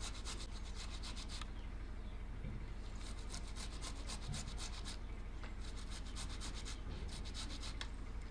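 Tomatoes being grated on a stainless steel box grater: runs of quick rasping strokes, about six a second, with short pauses between the runs.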